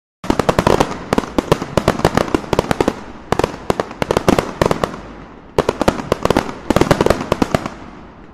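Fireworks going off in three volleys of rapid, sharp pops and crackles, about three seconds apart, each volley fading before the next begins.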